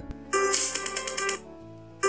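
Music track playing back: a burst of rapid, evenly spaced beats over held tones lasting about a second, then a quieter stretch, with the same burst starting again at the end.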